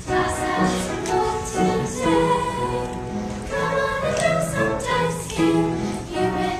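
A chorus of girls singing a show tune together on stage, held notes changing about every half second over a steady low accompaniment.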